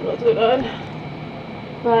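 A woman's short wordless vocal sound, about half a second long, muffled behind her hand and sleeve, a quarter of a second in. She starts speaking again near the end.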